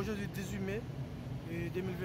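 Faint voices talking, over a steady low hum.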